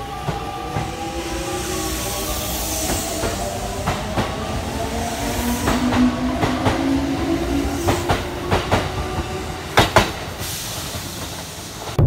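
Kintetsu electric train pulling out along the platform. Its motor whine rises slowly in pitch as it gains speed, and the wheels clack over rail joints, the clacks coming closer together near the end.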